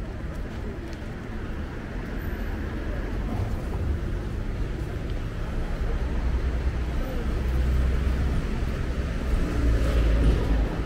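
Road traffic passing close by: a steady low rumble of vehicles that grows louder in the second half as a van and cars go past.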